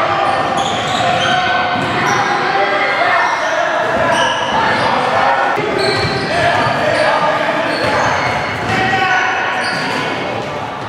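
Overlapping voices of players and spectators chattering in a large gymnasium, with a basketball bouncing on the hardwood court.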